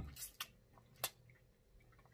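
Close-up eating sounds of neck-bone meat being chewed: a few soft, wet mouth clicks and smacks, the clearest about a second in. A hummed "mmm" fades out at the very start.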